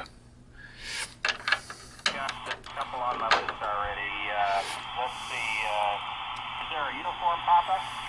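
Single-sideband voice traffic on the 20-metre amateur band, received by an R-2322/G military HF receiver tuned to 14.300 MHz and played through a loudspeaker. It is thin, band-limited speech over a steady hiss and begins about a second in.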